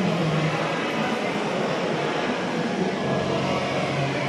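Steady background din of a crowded indoor showroom: an even wash of crowd chatter and room noise with a faint low hum underneath.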